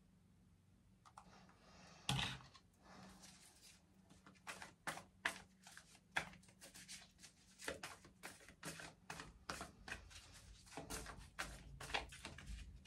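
A deck of tarot cards being shuffled by hand: a faint run of quick, irregular card clicks and flicks that starts a few seconds in, after a single knock about two seconds in.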